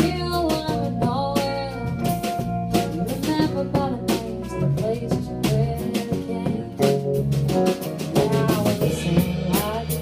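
Live country band playing an instrumental break: an electric guitar lead with bending, sliding notes over strummed acoustic guitar, electric bass and a drum kit keeping a steady beat.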